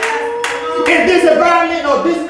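Hands clapping in a quick beat, with a voice holding one long note and then singing over it.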